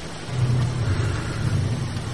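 A low rumble over steady background hiss, swelling slightly about half a second in and easing off again.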